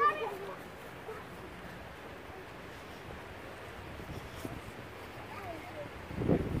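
A young child's short high-pitched vocal sound right at the start, then a steady faint outdoor background.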